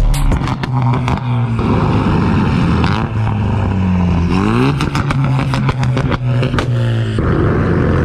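Ford Mustang's engine revving, its pitch climbing in a rev about halfway through, with sharp cracks and pops from the exhaust, the sound of a car tuned to spit flames.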